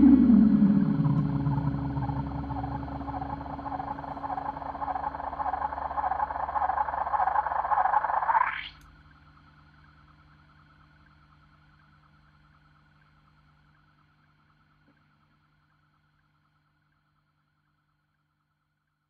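The closing note of an instrumental band piece on electric guitar and keyboards: a falling pitch slide settles into a sustained, wavering note that swells, then sweeps sharply upward and cuts off suddenly about eight and a half seconds in. A faint ringing tail fades out over the next few seconds, leaving silence.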